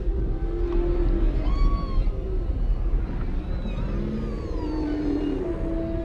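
Humpback whale song: a string of calls that glide up and down in pitch, some with high overtones, over background music with a steady low rumble.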